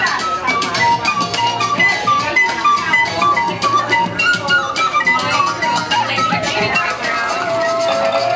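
Live instrumental duet: a soprano recorder plays a melody of held and short notes over the plucked metal tines of a kalimba, with quick percussive strokes running underneath.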